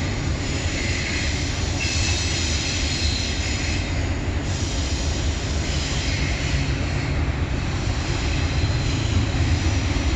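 Double-stack container freight cars rolling steadily across a stone arch bridge overhead: a continuous deep rumble of wheels on the rails, with brighter, higher wheel noise swelling and fading a few times.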